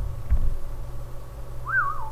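Steady low hum, with a soft low thump about a third of a second in and one short whistle-like chirp near the end that rises and falls in pitch.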